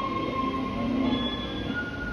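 Instrumental interlude of a pop ballad's backing track: sustained held notes over a steady accompaniment, with the pitch of the held notes shifting about a second and a half in.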